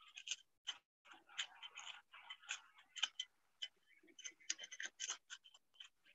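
Faint, irregular light clicks and scrapes of a cooking utensil against a plate and pan as pieces of pan-fried tofu are lifted and moved, several a second, heard choppily through a video-call connection.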